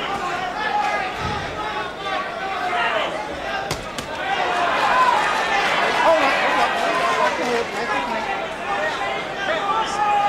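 Boxing arena crowd noise: many overlapping voices shouting, with a few sharp thuds of gloved punches landing, the clearest a little under four seconds in.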